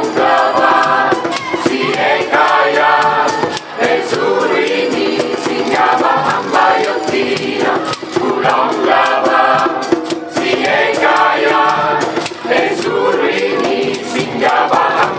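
Mixed choir singing gospel in harmony, accompanied by a hand drum struck with the palms in a steady, even rhythm.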